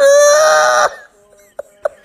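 A woman's long, high-pitched shriek of laughter, held for just under a second and then cut off, followed by a couple of short laughing gasps.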